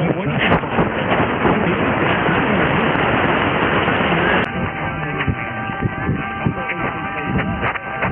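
Icom IC-R8600 receiver on 666 kHz medium wave with the local station off air: a heavy mix of several distant stations' speech and music under static, nothing dominating. About four and a half seconds in there is a click as the receiver switches from synchronous AM to lower sideband. After that, several steady whistles from the stations' beating carriers sound over the jumbled voices.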